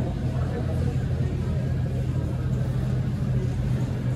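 Shop-floor background of a busy shopping mall: a steady low hum under indistinct chatter of shoppers.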